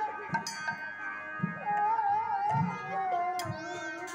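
Devotional kirtan music: a harmonium holds steady notes while a high voice sings a wavering, sliding line over it, with scattered low drum strokes and sharp clicks from hand cymbals.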